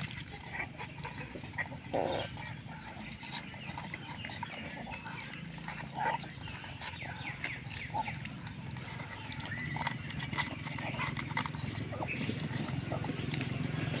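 Two puppies eating from plastic bowls: rapid chewing and lapping, with small clicks of teeth and food against the plastic. A low steady hum runs underneath and grows louder near the end.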